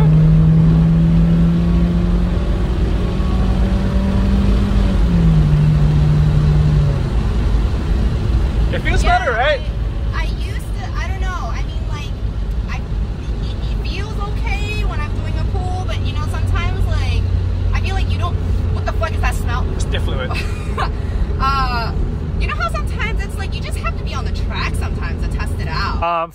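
In-cabin sound of an NB2 Mazda Miata's four-cylinder engine pulling in gear, its pitch climbing and then dropping about five seconds in at a gear change. It then settles to a steady low drone as the car slows and comes to a stop.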